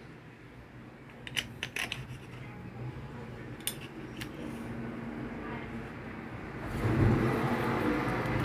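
A few light clicks and taps of the rotor shaft and plastic end housing of a disassembled electric fan motor being handled, over a faint steady hum, with louder handling noise near the end.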